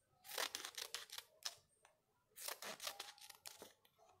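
Scissors snipping a fringe of short cuts into a folded strip of double-sided paper, faint, in two runs of quick snips with a pause of about a second between them.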